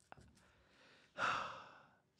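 A man's exasperated sigh into a close microphone: a breathy exhale starting just past halfway and fading out over most of a second. A couple of faint clicks come near the start.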